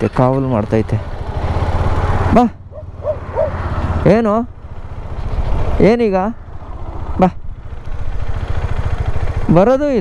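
Motorcycle engine idling steadily, with a man's drawn-out wordless calls several times, each rising and falling in pitch.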